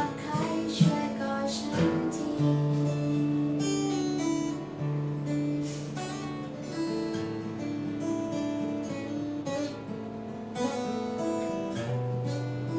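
Acoustic guitar playing a song's chords, with the low notes ringing and changing every couple of seconds.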